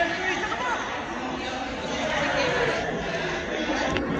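Indistinct chatter and children's voices echoing in an indoor swimming pool hall, over a steady wash of water noise.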